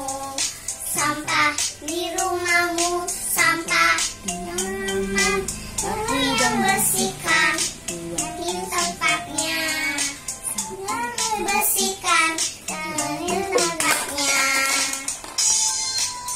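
Two young children singing a song together in high, bright voices.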